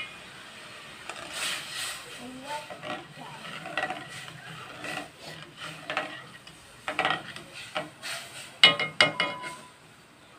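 A metal ladle stirring thin, spice-blended tempoyak gravy in a red pot, with scattered light knocks and scrapes of the ladle against the pot. Brief voice sounds come about 7 s in and again near the end, the loudest of them near the end.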